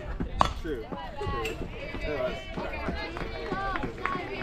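A softball bat striking the pitched ball with one sharp crack about half a second in, followed by players and spectators shouting and cheering.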